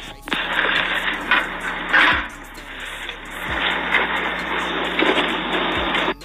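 Audio of a Ring doorbell camera clip playing back: a steady outdoor hiss and rush, thin and narrow like a phone line. It starts just after the beginning and cuts off suddenly at the end.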